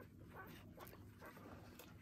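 Faint, scattered squeaks and whimpers from days-old border collie pups as they are handled.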